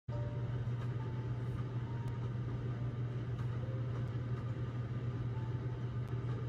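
A steady low hum with a faint hiss over it, unchanging throughout.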